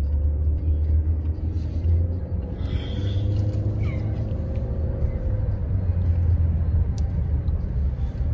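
Steady low road rumble and engine hum inside a moving car's cabin.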